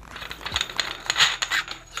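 A screw-on barrel shroud being unscrewed by hand from an AR-15's threaded barrel: a run of small metallic clicks and scrapes, busiest a little past halfway.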